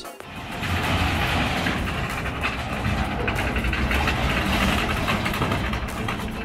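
Engine of a tracked WWII-style self-propelled gun replica running steadily as the vehicle drives off.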